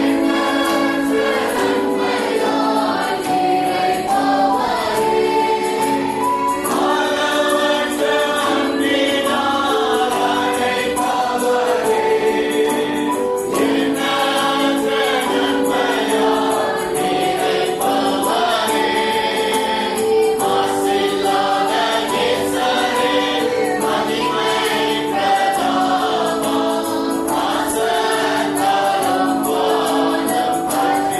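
Music: a choir singing a gospel song with accompaniment and a light, steady percussive beat.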